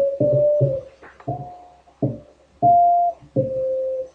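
A guitar riff played back from a recording sampled at about 1600 Hz, so nothing above about 800 Hz remains and the notes sound dull and band-limited. It is a string of separate plucked notes, each dying away, with two longer held notes in the second half.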